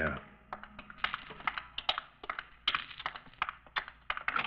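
Radio-drama sound effect of footsteps on a hard surface, as people walk up to a parked car: a quick, uneven run of sharp clicks, about three to four a second.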